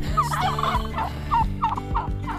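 Domestic turkeys calling, a rapid run of short rising and falling calls.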